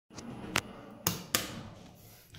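Three sharp clicks about a second in, the first being the up hall call button of an elevator pressed.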